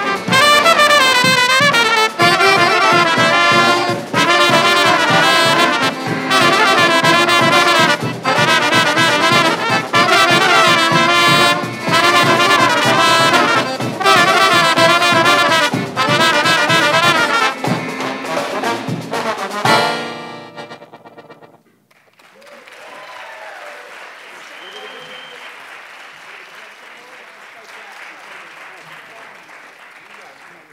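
Balkan brass band playing: trumpets and trombones over tuba and accordion, with snare drum and a cymbal-topped bass drum keeping a steady beat. The music ends abruptly about two-thirds of the way through. Audience applause follows, much quieter.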